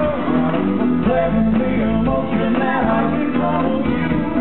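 Rock music played loud through the show's sound system, with a sung melody over guitar and a steady bass line, picked up from the audience.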